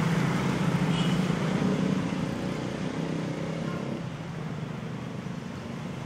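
Motorcycle engine running steadily with street traffic noise, gradually fading away over the few seconds.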